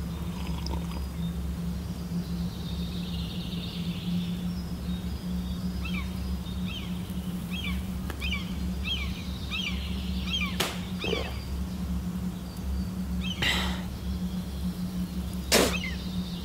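Film background score: a low, steady drone with three sharp whoosh effects, about ten and a half, thirteen and a half and fifteen and a half seconds in. In the middle there is a run of short, repeated high chirps.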